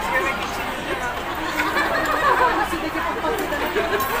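Diners' chatter: several voices talking at once in an indistinct babble.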